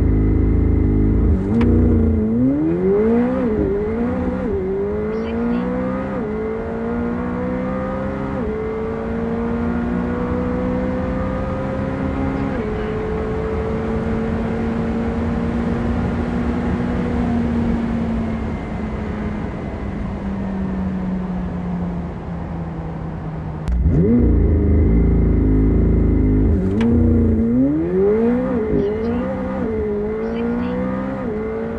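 The 2021 McLaren 765LT's twin-turbo V8, heard from inside the cabin, launching hard from a standstill and revving up through rapid upshifts, each a sharp drop in pitch. It then holds a high steady note at top speed, with wind and road noise, and sinks slowly as it eases off. Near the end, louder, a second launch with quick upshifts begins.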